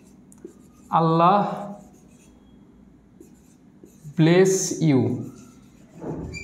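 Marker pen writing on a whiteboard in faint strokes, heard between two short spoken phrases from a man's voice, which are the loudest sounds.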